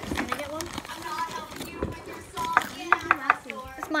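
Girls' voices talking indistinctly, with a few sharp clicks about two and a half to three seconds in.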